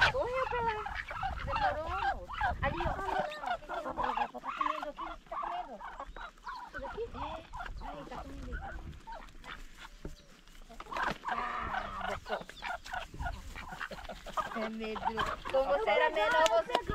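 Domestic chickens and ducks calling as a mixed flock feeds on scattered corn: short clucks and quacks overlapping throughout, with a louder burst of calls about eleven seconds in.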